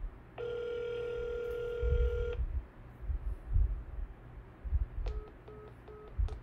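A phone sounding a steady electronic beep held for about two seconds, then a quick run of short beeps near the end, over low handling thumps.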